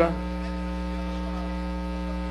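Steady electrical mains hum with many evenly spaced overtones, unchanging throughout, with the tail of a man's voice fading out at the very start.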